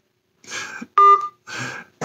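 A single short electronic beep from a phone, about a second in, between bursts of a man's soft, breathy laughter.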